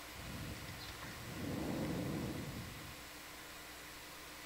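A low, muffled rumble that builds about a second in and fades out by about three seconds, over a faint steady hiss.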